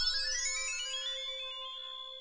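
Cartoon magic sound effect: a quick rising run of high notes, each held as the next sounds, which then ring on together and slowly fade out.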